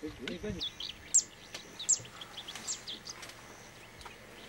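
Wild birds calling over grassland: a run of short high chirps, with two loud, sharp, downward-sliding calls about one and two seconds in. A person's voice is heard briefly at the start.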